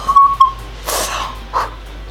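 A woman's short, high-pitched squeal of excitement, followed by two breathy bursts of laughter.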